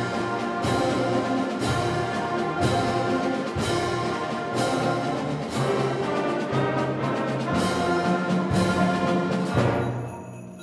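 Middle-school concert band of brass and woodwinds playing sustained chords, with a percussion strike about once a second.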